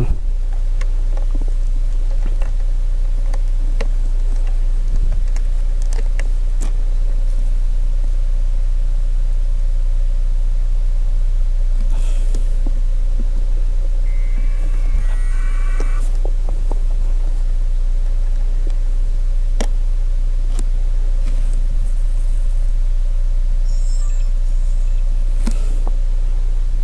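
A steady low rumble runs throughout, with a faint hum over it. Scattered small clicks and handling noises come from working on the balloon payload's camera batteries and terminals. Short electronic beep sequences sound about fifteen seconds in and again near the end.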